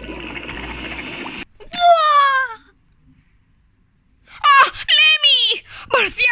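A rushing noise from a cartoon playing on a tablet, cut off abruptly about a second and a half in as it is paused. Then a child's voice gives two falling, crying wails, with a silent gap of under two seconds between them.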